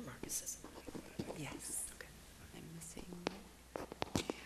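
Quiet whispered and murmured talk picked up by the meeting-room microphones, with hissy sibilant sounds and a few small clicks.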